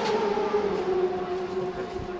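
A racing motorcycle engine held at high revs, one steady high-pitched tone that sinks slowly in pitch over about a second and a half.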